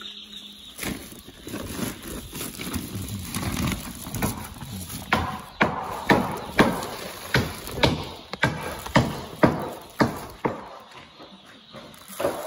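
Plastic inner liner and woven sack of a bag of chick feed pellets rustling and crackling as they are opened and handled. There is a run of sharp crinkles, about two a second, through the middle, and it dies down near the end.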